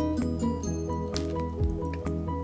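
Background music: a tune of held notes over a steady bass.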